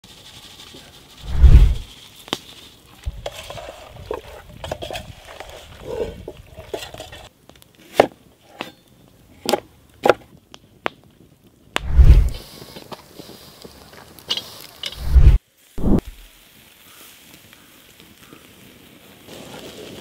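Food-preparation sounds with no talk: a cleaver chopping onion on a wooden cutting board in a run of crisp knocks, with several heavy low thumps on the board. Near the end a sizzle starts as chopped onion drops into a hot pan.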